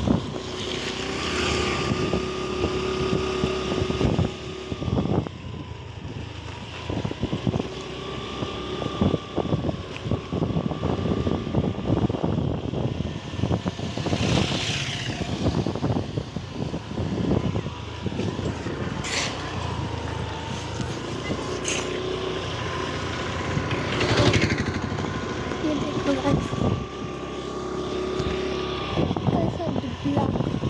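A motor vehicle's engine running steadily on the move, its hum holding one pitch with slight rises and falls, with wind buffeting the microphone.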